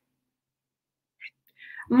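Near silence with the sound cut out for over a second, then a faint brief blip and soft breathy sounds, and a woman's voice starting to speak near the end.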